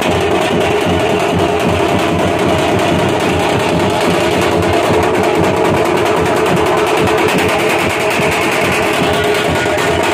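Loud, continuous festive band music driven by fast beating on large steel-shelled bass drums, with a steady held tone over the beat.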